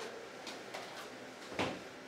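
A small plastic hand-held date stamp being handled: a few light clicks, then one louder knock about a second and a half in.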